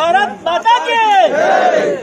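A group of people shouting a slogan together, loud: a few short shouts, then one long drawn-out shout over the second half.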